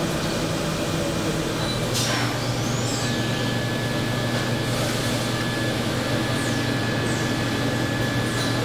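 Steady hum of factory machinery. About two seconds in there is a brief whoosh, after which the hum's pitch changes and a thin high steady tone sets in.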